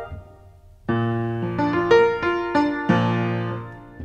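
Upright piano playing the closing bars of a song: a low chord struck about a second in, a few single notes above it, then a last chord near the end left to ring and die away.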